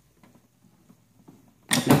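Faint, irregular light clicks and rattles from a pedal being tightened onto an exercise bike's crank arm with a small wrench. A man's voice comes in near the end.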